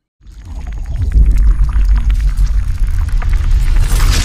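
Outro sound effect for the logo animation: a deep rumble that swells up within the first second, full of fine crackling and bubbling, brightening into a whoosh at the very end.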